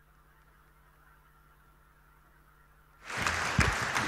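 Near silence for about three seconds, then audience applause in a hall starts abruptly near the end.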